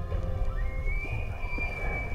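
Bull elk bugling: one long high whistle that rises slightly, then holds for over a second, laid over background music.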